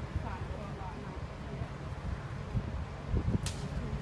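Outdoor street ambience: a steady low rumble with faint voices, and one brief sharp swish about three and a half seconds in.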